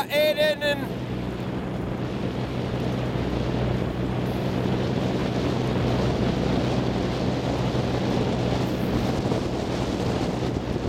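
Outboard motor of a coaching launch running at a steady speed, a low even hum, with wind buffeting the microphone throughout.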